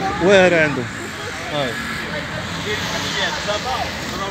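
Indistinct voices talking, loudest in the first second and fainter after, over a steady background rumble.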